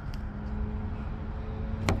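Steady low rumble of road traffic with a faint steady hum underneath, and a single light tap near the end.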